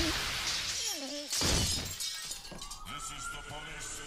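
Cartoon sound effects: glass shattering as a man is thrown through a window, a short falling cry about a second in, and a sudden hit just after. From just past the midpoint a siren starts up, its wail slowly rising in pitch.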